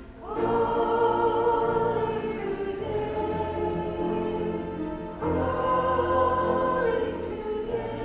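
A trio of women singing a worship song into microphones, with accompaniment. They hold long notes, with one sung phrase starting about half a second in and a second one starting about five seconds in.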